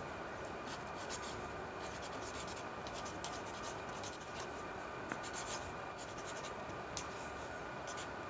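A pen writing on a lined paper notebook: a run of faint, quick scratchy strokes as words and figures are written, over a steady background hiss.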